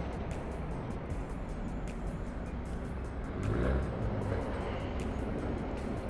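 Steady road traffic noise, a low rumble with a vehicle passing a little after the middle.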